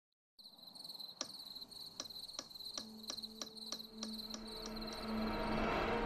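Night-time sound effect: crickets chirping steadily, with a clock ticking about two and a half times a second. A low steady tone comes in about halfway and grows louder toward the end.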